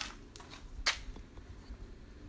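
Handling noise of a phone being picked up and moved: a few brief scratchy rustles and clicks, the sharpest at the start and just before a second in.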